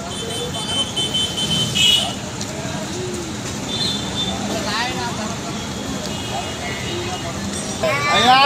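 Roadside traffic and crowd voices in the background, with a steady high toot about a second and a half long near the start and shorter ones later.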